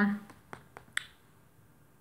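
Three short, sharp clicks in quick succession within the first second, right after the tail of a held spoken 'um'.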